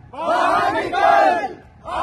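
A group of young men chanting a phrase together in loud unison. The phrase lasts about a second and a half and breaks off briefly before the next one starts.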